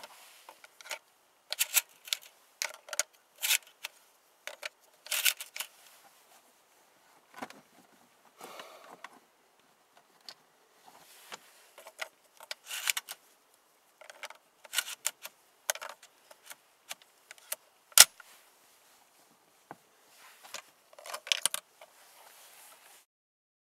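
Shotgun shells pushed by hand into a UTS-15 12-gauge bullpup pump shotgun's magazine tubes through its top loading port: irregular clicks and clacks of shells seating against the plastic receiver. One sharp snap, the loudest, comes about four seconds before the end.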